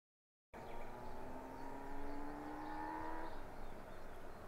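After a brief silence, a motor engine's drone rises slowly in pitch and stops about three seconds in, over steady outdoor background noise.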